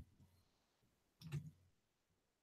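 Near silence broken by soft clicks of a computer mouse: one right at the start and a short cluster of clicks about a second and a quarter in.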